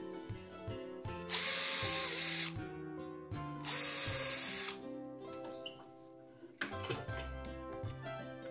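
Cordless drill boring two small blade-entry holes through a 6 mm plywood blank for a scroll saw inside cut: two short runs of about a second each, a steady motor whine.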